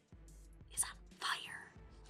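A woman whispering a few words in two short breathy bursts, about a second apart, much quieter than her normal speaking voice.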